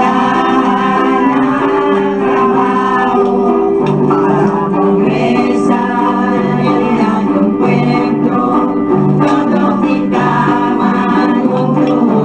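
A song sung in Chavacano over a sustained organ-like keyboard accompaniment, with held chords and a moving vocal melody.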